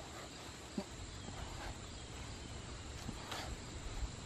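Quiet outdoor ambience with a steady high insect drone, with faint rustling and a couple of soft thumps from a man doing crunches on grass and leaves.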